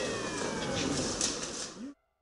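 A pitched whine with overtones, falling slowly and steadily in pitch over a background of workshop noise, cut off abruptly near the end.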